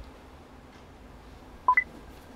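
A short two-note electronic beep near the end, a lower tone then one an octave higher, over quiet room tone.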